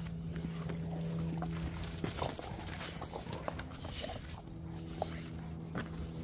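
Dogs play-wrestling on bare dirt: scuffling paws and short knocks, with a low, steady growl that stops about two seconds in and comes back in the second half.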